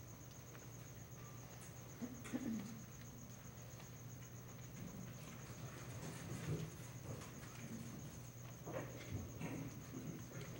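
Quiet hall room tone with a steady low hum and a faint thin high whine, broken by scattered soft rustles and small knocks from people shifting and moving, a few seconds in, again past the middle, and near the end. No singing or playing is heard.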